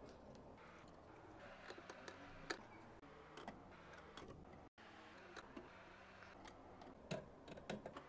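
Faint, scattered clicks and ticks of a screwdriver working the screw terminals on a switching power supply's terminal block, over near silence.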